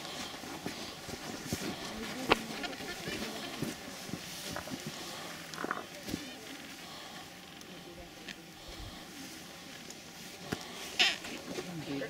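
Adélie penguin colony: a busy mix of penguin calls, with scattered sharp clicks. The loudest click comes about two seconds in, and a louder burst of calling comes near the end.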